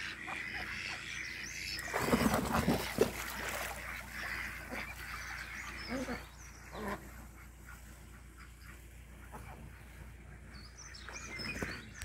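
Ducks quacking, with a few short separate quacks a little past the middle. A louder burst of noise comes about two seconds in and lasts a second or so.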